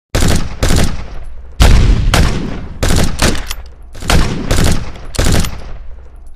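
Gunfire sound effect: about ten loud shots fired singly and in quick pairs at irregular spacing, each echoing, over a low steady rumble that fades out at the end.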